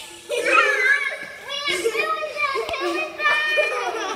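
Children's high-pitched voices, talking and calling out in several stretches.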